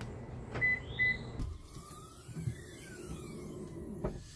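A button click, then two short high beeps from a Toyota Prius answering its key fob, followed by a few soft low knocks.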